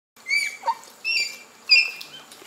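Bonobo peeps: three short, high-pitched squeaking calls, the vocalisation whose meaning shifts with the situation.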